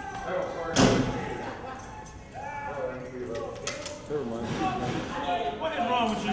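A single loud bang on a steel cell door about a second in, echoing off the hard walls of a cinderblock corridor, with muffled voices calling out afterwards.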